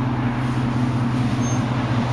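Steady low drone of an idling engine, unchanging in pitch.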